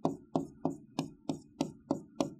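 A pen striking a writing board in quick hatching strokes, about three sharp taps a second, as an area is shaded in.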